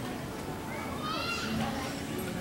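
Background chatter of people's voices, with one high-pitched voice speaking or calling out about a second in.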